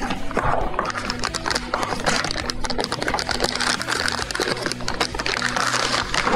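Crinkling and rustling of MRE packaging as a heated entree pouch is pulled from its flameless ration heater bag, over background music with steady held tones.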